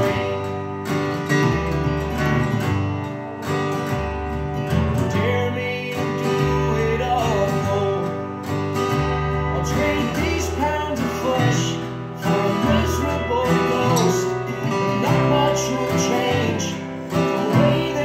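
Taylor steel-string acoustic guitar strummed in steady chords with changing bass notes. A melody line rises and falls above it.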